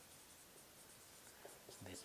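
Faint squeaks and scratches of a marker pen writing on a whiteboard, in short separate strokes.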